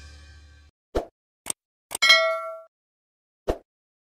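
A few short, sharp clicks and one bright ding about halfway through that rings for about half a second, with the tail of music fading out at the start.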